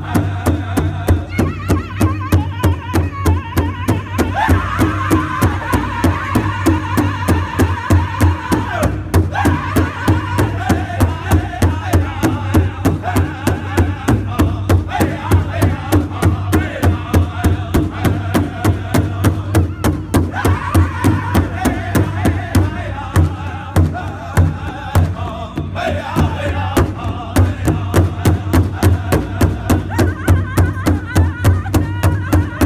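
A powwow drum group singing together in high voices over a steady, even beat that several drummers strike in unison on one large rawhide-headed powwow drum with drumsticks. The beat softens for a few seconds past the middle, then returns at full strength.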